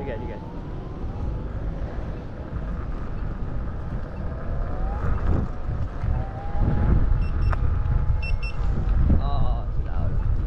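Wind rushing over the microphone while riding a Begode A2 electric unicycle, with a thin whine from the hub motor that rises and falls as speed changes. The wind grows louder in the second half, and a few short high beeps come about seven and eight seconds in.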